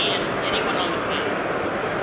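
Steady background din of a busy exhibition hall, with faint distant voices mixed into it.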